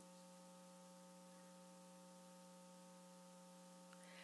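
Near silence: a faint steady electrical hum, the room tone of the recording.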